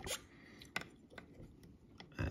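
Faint handling noise from fingers working a hook and slotted tungsten bead held in a fly-tying vise. A few small clicks and ticks, the loudest a little under a second in.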